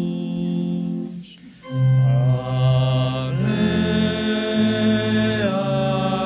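A slow, chant-like hymn with long held notes. It breaks off briefly about a second in, then comes back louder.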